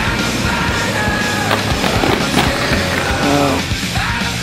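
Loud rock music with a singing voice over a driving band, with a few sharp hits about midway through.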